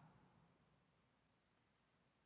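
Near silence: faint room tone in a pause between spoken parts, with a faint steady high hiss.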